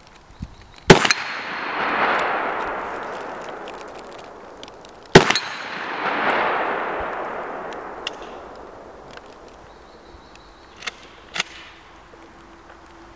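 Two gunshots about four seconds apart, each a sharp crack followed by a long rolling echo that swells and fades over a few seconds. Two faint knocks follow near the end.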